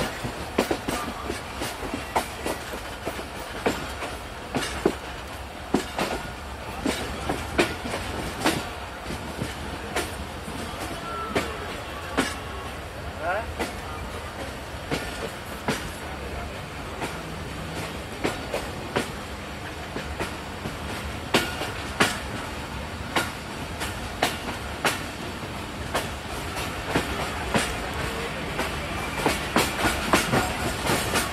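A moving train heard from on board: a steady low rumble with frequent irregular clicks and knocks of the wheels running over the rails.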